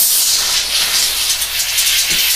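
A shaken can of Coke cracks open at the start, then hisses loudly and steadily as foam gushes out of the opening. Tapping the can before opening has not stopped it foaming over.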